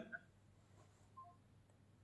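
Near silence, with a few faint, short electronic beeps from the phone as the call ends.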